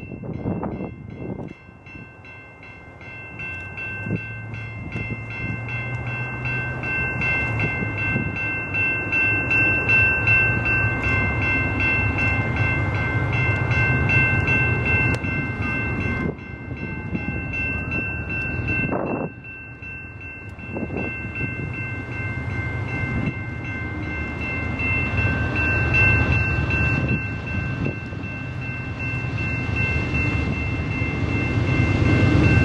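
Level-crossing warning bell ringing rapidly and steadily while a Canadian Pacific freight train's diesel locomotives approach, their low engine drone growing louder over the first ten seconds.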